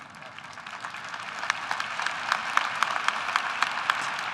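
Audience applauding, the clapping swelling louder over the few seconds.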